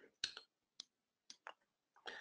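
About five faint, sharp clicks at irregular intervals over the first second and a half, against near silence.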